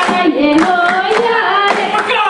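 Group of voices singing a Djiboutian folk-dance song over regular hand claps.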